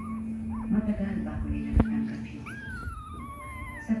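Newborn Siberian husky puppy whining: a few short high cries, then one long cry that slowly falls in pitch near the end.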